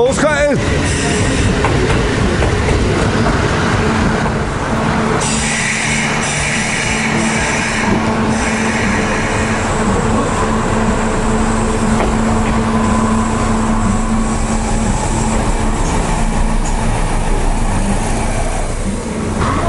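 Kintetsu electric limited-express trains in a station: one pulls out as another comes in alongside the platform and slows to a stop. A steady low hum runs through the middle of the arrival.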